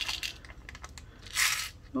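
Small crystal rhinestones tipped from a plastic bag into a clear plastic tray, clicking and rattling against each other and the plastic with some bag crinkle, and a short louder rush of it about one and a half seconds in.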